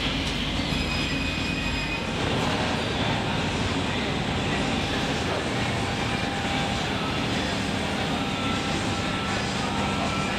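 Steady din of workshop machinery in a board-cutting shop: a continuous rushing noise over a low hum, with faint thin whines in it.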